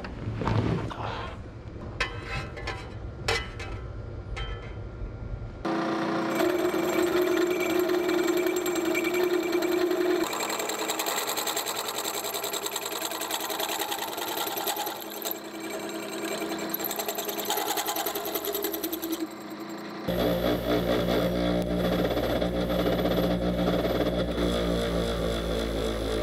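A few knocks and clicks of metal being handled, then a hole-saw tube notcher cutting into a steel tube clamped in a vise, running steadily for about fourteen seconds. About twenty seconds in it gives way to a second, lower and heavier power tool that runs to the end as the notch is cleaned up.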